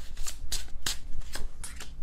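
A tarot deck being shuffled by hand: an uneven run of crisp card snaps and riffles.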